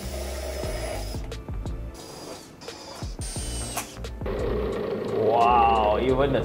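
Makita cordless drill running as it drives a screw into a blue light-steel roof-truss channel, over background music. The music gets louder from about two-thirds of the way in.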